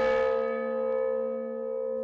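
A large memorial honor bell ringing on after a single stroke, its many steady tones slowly fading away.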